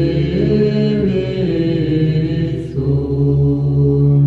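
Low male voices singing church chant in long, sustained chords, moving to a new chord about three seconds in.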